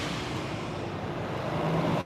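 Steady city-street background noise: an even hiss of traffic with a low hum running under it.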